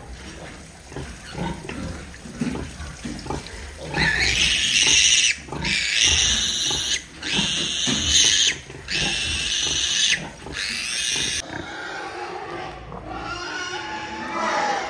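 Pigs at a nursing sow: low grunting pulses at first, then from about four seconds in suckling piglets squeal in about five long, loud, high-pitched cries. The squealing stops about eleven seconds in.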